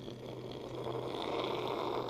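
A man imitating a missile in flight with his mouth: a breathy whooshing hiss that grows steadily louder, over a faint steady low hum.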